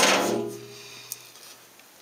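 A knock on the cold saw's sheet-steel base cabinet, the metal panel ringing with a low hum that fades away over about a second.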